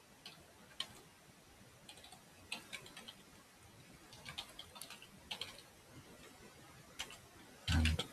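Faint, scattered clicks of a computer keyboard: single keystrokes and short runs with pauses between them. A man's voice starts just before the end.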